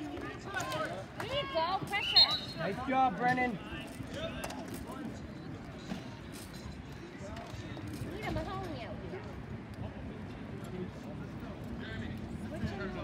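Spectators' voices and shouts at an outdoor ball hockey game, loudest in the first few seconds, with scattered sharp clacks of sticks and the ball on the sport-court surface.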